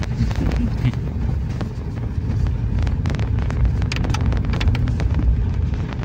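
The inside of a vehicle on a rough unpaved road, with a steady low engine and road rumble and wind buffeting the microphone. A cluster of rattling knocks comes about three to four seconds in as the vehicle jolts over the surface.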